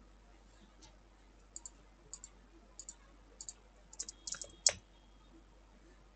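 Light computer mouse clicks, mostly in quick press-and-release pairs about every half second. They bunch together a little after four seconds in, with one louder click just before five seconds.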